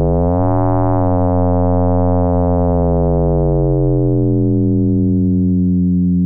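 Sustained tone from a Serum software synthesizer: a sine oscillator frequency-modulated by an audio-rate LFO on its coarse pitch, giving a rich FM timbre with many overtones. As the modulation amount is changed, the overtones shift and the tone's colour changes, about a second in and again around three to four seconds in.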